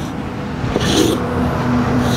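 A block plane takes a short, light shaving stroke along the edge of a wooden paddle blade, heard as a brief hissing scrape about a second in. Under it runs a steady low rumble with a hum.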